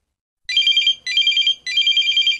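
An electronic telephone ring: a rapid trilling warble of two alternating high tones, sounding three times in quick succession from about half a second in, signalling an incoming call.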